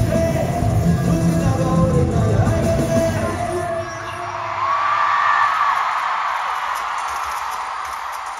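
Live arena concert: the song's bass-heavy backing music plays for about four seconds and then stops, and a large crowd screams and cheers from then on.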